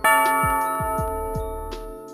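Music for an animated logo: a bell-like chord struck at the start and ringing as it slowly fades, over a run of low falling swoops about three a second.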